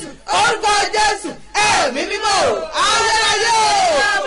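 Loud, impassioned shouted prayer. From about a second and a half in, several voices overlap in a sustained, gliding chant-like shout.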